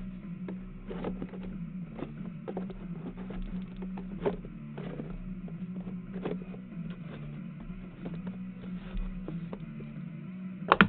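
Cardboard sports-card hobby boxes handled in a cardboard shipping case: scattered knocks and scrapes as boxes are gripped and slid and a die is tossed in, over a steady low hum.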